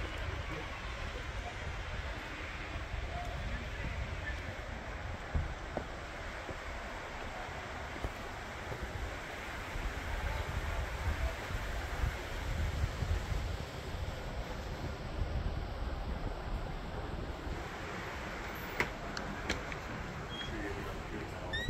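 Steady background noise with a low rumble on the microphone and faint, indistinct voices; a few sharp clicks near the end.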